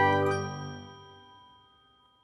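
The last ringing, chime-like notes of a channel intro jingle dying away, fading out about a second in.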